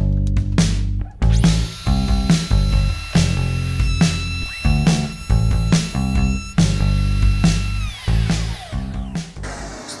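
Background music with a steady beat, over which a DeWalt trim router in a router table starts up with a high whine about a second in, runs while taking a deeper chamfer off a piece of wood, and is switched off about two-thirds of the way through, its whine falling in pitch as it spins down.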